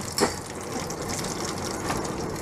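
Breaded bluegill fillets sizzling steadily in a small pan of hot frying oil, with two short clicks of a utensil against the pan, one just after the start and one near the end, as the fillets are turned.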